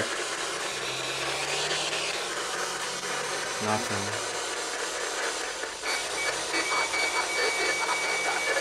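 Handheld spirit box radio sweeping through FM/AM stations, giving a steady hiss of static. A little before the end, the static turns to rapid choppy fragments with a thin steady high tone.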